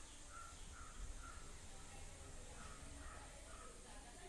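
Faint bird calls: two runs of short, evenly spaced calls, about three a second, one early and one late.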